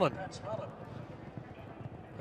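A man's commentary voice trails off at the start, then a pause filled with faint, steady background noise on the racecourse broadcast.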